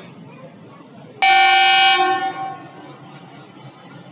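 A diesel locomotive's horn sounds one short blast about a second in, lasting under a second before fading, over the steady rumble of passenger coaches rolling past.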